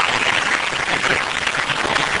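Audience applauding steadily: a dense run of many hands clapping.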